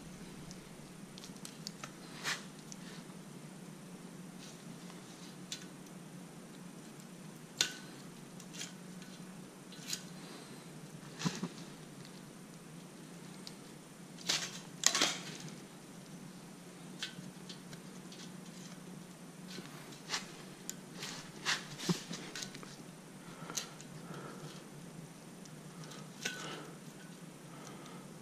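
Scattered light clicks and metallic taps as a removed 6.7 Cummins steel head gasket is handled and turned over by hand, over a faint low steady hum. The loudest cluster of clicks comes about halfway through.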